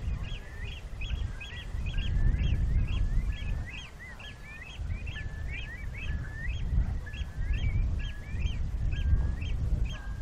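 Birds calling without a break, a quick string of several short high calls a second mixed with lower gliding notes. Under them runs a loud, gusting low rumble of wind on the microphone.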